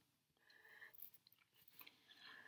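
Faint squeak of a Sharpie marker's felt tip drawing a short stroke on paper about half a second in, followed by a few light ticks of the tip on the sheet.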